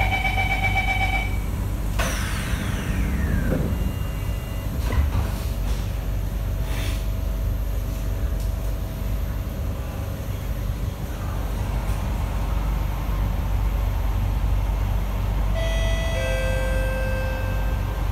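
Inside an SMRT C151A train carriage: the door-closing warning chime beeps for about a second, then the doors slide shut with a knock about two seconds in. The train pulls away with a steady low running rumble, and near the end a stepped electric whine from the traction motors as it gathers speed.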